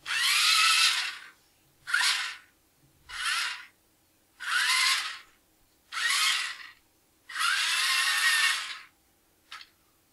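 The two small geared DC motors of a 2WD robot car chassis whining in six short runs, with pauses of about half a second to a second between them, as the car drives, reverses and spins through its programmed moves. The longest run comes near the end.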